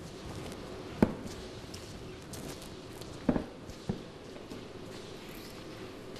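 Three sharp knocks on a hard surface in a large church: one about a second in, then two close together a little past the three-second mark, over a faint steady hum.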